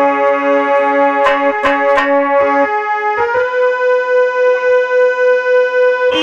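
Instrumental introduction on a keyboard instrument: sustained held chords, with a few sharp drum strokes in the first half. About three seconds in, the chord changes to one long held note.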